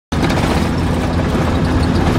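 A car driving, heard from inside the cabin: steady engine and road noise with a deep rumble.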